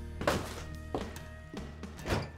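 A song playing, with a few sharp knocks or thunks cutting through it, the first about a quarter-second in and two more around the one-second mark.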